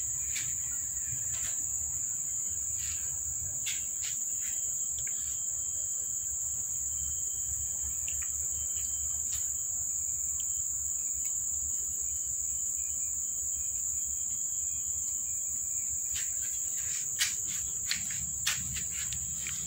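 A steady, high-pitched insect chorus buzzing without a break, over a low rumble. Scattered faint clicks run through it, with a couple of sharper clicks near the end.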